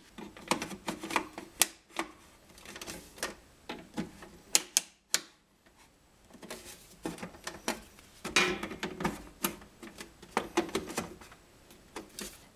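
Irregular plastic clicks and taps as a distribution board's plastic front panel is pressed into place and its plastic fasteners are turned with a screwdriver, with handling rustle between.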